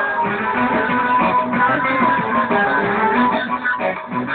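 Instrumental break in a live Turkish folk song: a quick plucked-string melody of short notes over keyboard accompaniment, with the singer silent.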